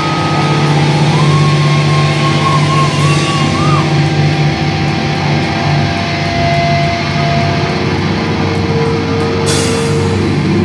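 Live heavy metal band holding a long, ringing distorted guitar-and-bass chord, with a wavering high guitar note over it in the first few seconds. A cymbal crash comes near the end.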